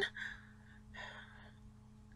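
A woman breathing between sentences: two faint, short breaths, one at the start and another about a second in, over a low steady hum.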